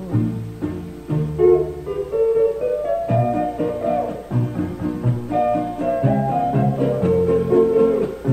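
Instrumental break between sung verses of a Spanish-language song: guitars with bowed strings carrying a melody over a steady bass beat.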